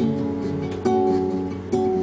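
Acoustic guitar strummed live, three chords a little under a second apart, each left to ring.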